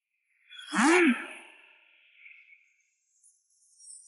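A single short, breathy vocal cry about a second in, its pitch rising and then falling, with a fainter trailing tail that fades out over the next second or so.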